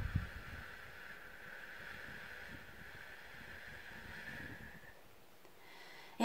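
A woman's long, slow exhale: a soft, steady breath hiss lasting about five seconds that stops abruptly. It is the slow out-breath of the in-for-four, out-for-seven hypnobirthing breathing technique.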